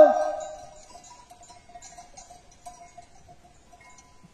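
Faint, scattered clinking of bells on a grazing sheep flock, coming and going.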